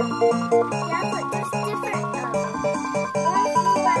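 Aristocrat Buffalo slot machine playing its electronic bonus-win tune, a quick run of short repeated notes, while the win meter counts up credits.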